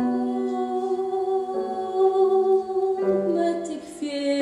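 Female singer holding one long note over piano chords for about three seconds, then moving to the next notes of the ballad.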